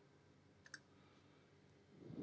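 Near silence broken by two quick, faint clicks close together about two-thirds of a second in: a computer mouse double-click.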